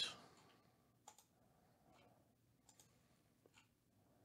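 Faint computer mouse clicks, a few single clicks about a second apart, in near silence.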